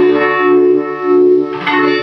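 Electric guitar, a Fender Stratocaster, played through a fuzz pedal and a Uni-Vibe-style modulation pedal into an amplifier. Sustained fuzzy notes ring with the level swelling and dipping, and a new note is picked near the end.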